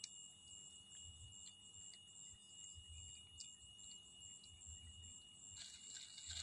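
Near silence: a faint, steady high-pitched insect trill, with a few faint soft clicks and thumps.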